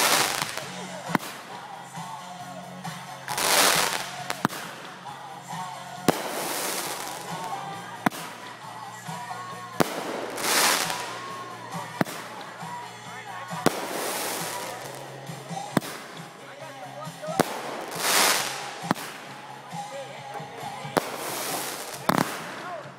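Consumer fireworks going off in a run: a sharp bang about every two seconds, and several long hissing swells of noise as the shells burst.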